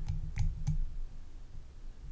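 A few light clicks, three in the first second, over a low steady hum.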